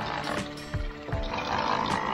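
Electric anchor windlass hauling in the anchor chain: a steady motor hum with sharp clanks of chain links passing over the gypsy.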